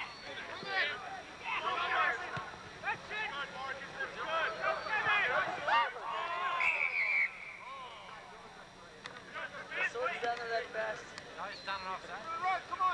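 Distant, unintelligible shouting from rugby players and onlookers during open play. About halfway through comes one short, steady, high blast of a referee's whistle stopping play.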